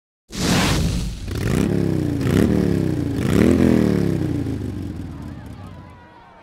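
Racing engine sound effect revving up, its pitch climbing and dropping three times like gear changes, with whooshes, then fading away near the end.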